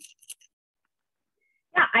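A woman's voice trailing off, then over a second of dead silence on a video-call line, then another woman saying "Yeah" near the end.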